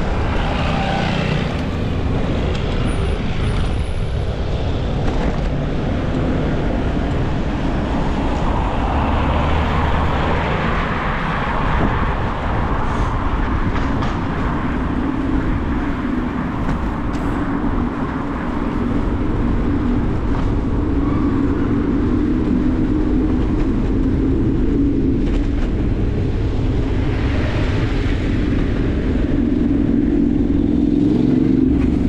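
Steady city traffic and road noise heard from a moving bicycle, with a low hum through the second half.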